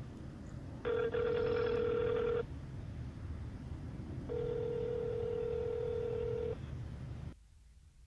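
A telephone ringing twice, each ring a steady electronic tone over a low background rumble.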